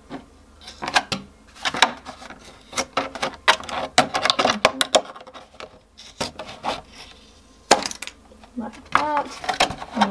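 Scissors cutting through the thick plastic neck of a milk bottle: a run of sharp, irregular snips and crunches, several a second, with a short pause about halfway.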